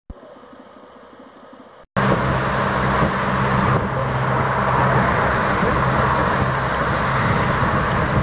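Outboard motor of a small motorboat running at speed, with the rush of its wake through the water. It starts abruptly about two seconds in after a quieter opening and runs steadily and loudly as the boat passes and heads away.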